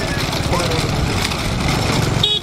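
Motorcycle engine running steadily close to the microphone, with wind rushing past. A person's short shouted call rises and falls about half a second in.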